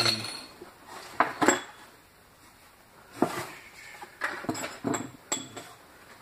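Small hard odds and ends, mostly metal hardware, clinking and knocking together as a hand rummages through them in a cardboard box. The clinks come in short clusters: a couple about a second in, one at about three seconds, and several more between four and five and a half seconds.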